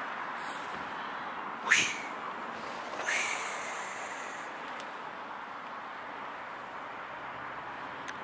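Steady outdoor background noise with two short high-pitched animal calls: one rising sharply about two seconds in, and another a second later that lasts a little longer.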